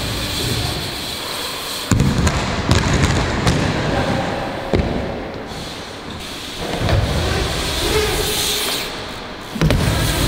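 BMX bike tyres rolling over ramp surfaces in rumbling stretches, with a few sharp thuds and knocks of wheels and bikes hitting the ramps.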